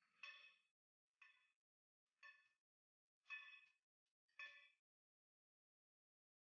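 Five faint metallic clangs about a second apart, each ringing briefly at the same pitch: steel striking steel at an excavator's bucket pin and linkage while the bucket is being taken off or fitted.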